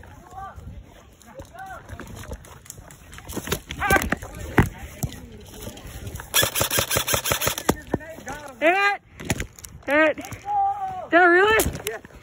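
Airsoft gunfire: scattered single shots, then a rapid full-auto burst lasting about a second and a half, a little past the middle. High-pitched shouts come before and after the burst.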